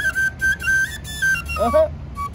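Bansri flute playing a melody of clear held notes that step up and down between a few high pitches. A brief voice sounds near the end.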